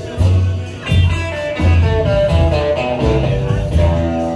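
Live rock band playing loudly, with electric guitars over a heavy bass line, heard from the crowd; the band comes back in sharply just after a brief dip at the start.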